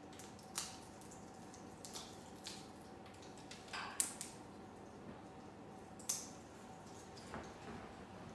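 Moluccan cockatoo chewing a pine cone: scattered sharp cracks and crunches from his beak, about half a dozen irregular snaps, the loudest about halfway through and again two seconds later.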